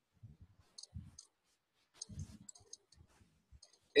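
Faint, scattered computer mouse clicks and light taps, coming in small groups every second or so.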